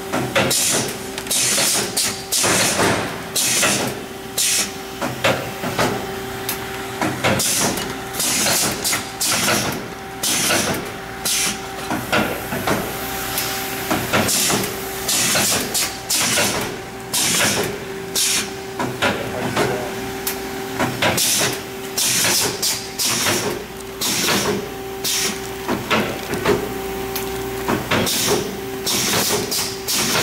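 A General automatic bag-forming packaging machine running in production, sealing and cutting filled multi-compartment bags at about one seal index a second: repeated short hisses of air with clicks and knocks over a steady hum.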